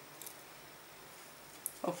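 Faint handling of a cut-out cardboard drink carton and a small paper eyelet: a light crackle early, then a single sharp little click, before a woman says "Ok" at the very end.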